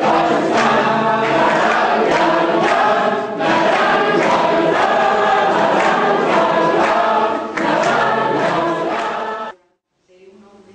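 A roomful of men and women singing together in phrases with short breaks. The singing cuts off suddenly near the end.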